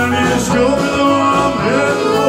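A live blues band playing: electric guitar, bass guitar, drum kit, saxophone and keyboard together, loud and steady.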